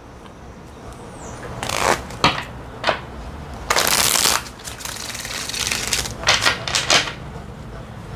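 A tarot deck being shuffled by hand: a few short papery rustles of cards sliding over one another, then a riffle shuffle about four seconds in, the loudest sound, the cards fluttering together for under a second, followed by a quicker run of rustles near the end.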